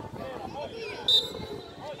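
A single short, shrill blast of a referee's whistle about a second in, signalling the free kick to be taken, over faint spectator voices.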